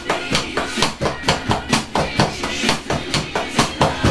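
Electronic drum kit played with sticks along to a pop-rock song with vocals, a steady beat of stick hits at about four a second.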